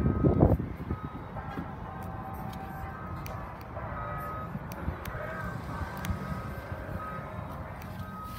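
Low thumps and rubbing at the start, then a steady low background with scattered light clicks and short, faint high tones every so often.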